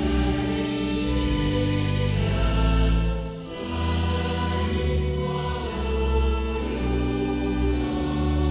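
Congregation singing a slow Reformed closing hymn in long held notes with organ accompaniment, with a short breath between lines about three and a half seconds in.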